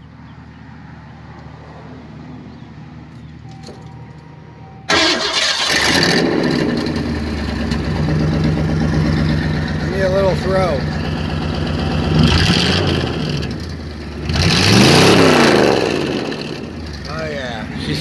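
A 1986 Ford Thunderbird engine starting suddenly about five seconds in and then idling through a straight-piped dual exhaust with turndown tips, its catalytic converter cut out. It gives a short blip of the throttle, then a rev that rises and falls near the end.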